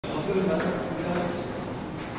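Table tennis balls clicking sharply, a few separate taps of ball on table or bat, over people talking.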